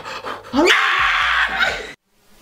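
A man's high-pitched cry of pain through gritted teeth, from salt and ice held against his forearm. It rises in pitch, is held loud and strained for about a second, then cuts off suddenly.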